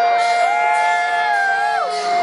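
Long held pitched tones from a rock band's stage over crowd noise; one note holds steady, then slides down in pitch near the end. This sounds like electric guitar feedback or sustained notes just before the band starts the song.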